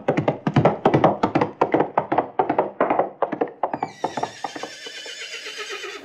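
Horse hoofbeats at a gallop, a fast run of knocks. About four seconds in comes a horse whinny that falls in pitch and fades away.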